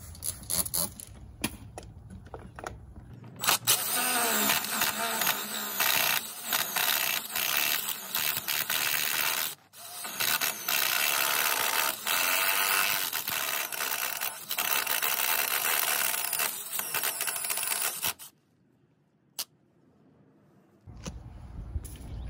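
A few light spritzes of a spray bottle, then a DeWalt 20V cordless drill boring a one-inch Irwin Speed Bore spade bit into the skiff's fiberglass hull for about fourteen seconds, the motor speed rising and falling, with a short break midway. The drilling stops about four seconds before the end.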